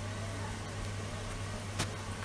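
Fish balls deep-frying in oil on an induction hob: an even frying hiss over a steady low hum from the hob, with one sharp click near the end.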